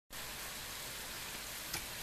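Steady, even hiss of room tone and microphone noise, with one faint click near the end.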